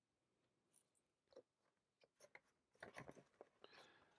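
Near silence, broken by a few faint, brief rustles and taps in the second half as cardboard record packaging is handled.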